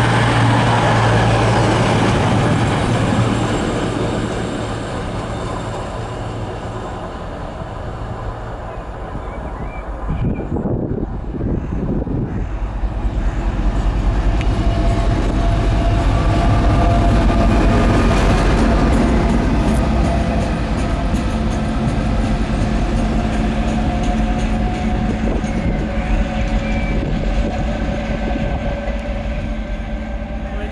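British Rail Class 56 diesel locomotive 56302 running light engine. Its Ruston-Paxman V16 diesel grows louder as it approaches, is loudest as it passes close by a little past halfway, then fades as it draws away, with a steady whine over the engine note. In the first few seconds a departing diesel multiple unit's engines are just as loud, then die away.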